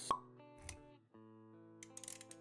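A sharp pop sound effect right at the start, then a softer thump, over background music with held notes. The music breaks off briefly about a second in, then resumes.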